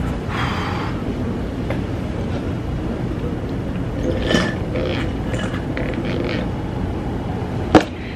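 Steady low rumble of room or microphone background noise, with a few faint short noises and one sharp click near the end.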